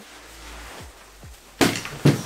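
Faint rustle of straps and fabric as a loaded Kelty Redwing 50 hiking backpack is slipped off the shoulders, then one loud thump about one and a half seconds in as the pack is set down on a wooden table.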